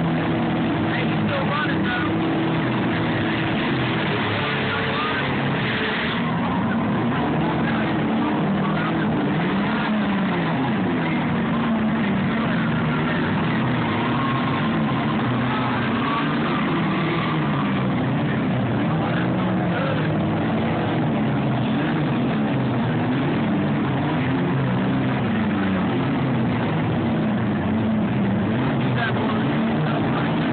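Several demolition derby cars' engines running and revving at once, their pitches rising and falling unevenly.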